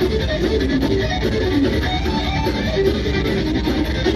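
Progressive metal band playing live at high volume: a fast electric guitar line through ENGL cabinets, over bass guitar and drums. The recording is distorted, overloaded by the venue's very loud speakers at head height.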